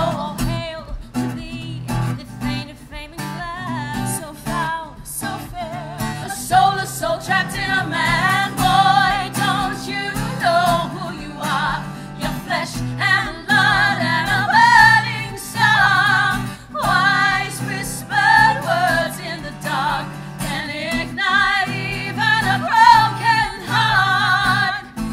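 Three women singing a musical-theatre song together, accompanied by an acoustic guitar.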